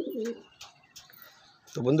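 A domestic pigeon gives one short, low, wavering coo at the start.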